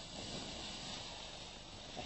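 Rush of air and fabric as a paraglider wing is pulled up and fills overhead during a launch run, swelling at the start and slowly dying away, with wind on the microphone.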